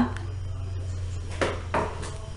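A pause in speech filled by a steady low electrical hum and faint handling noise, with a short soft voice sound, a breath or murmur, near the end.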